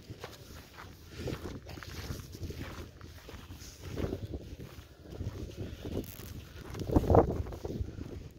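Footsteps on loose sandy, gravelly ground, irregular soft thuds, with a louder low rumble near the end.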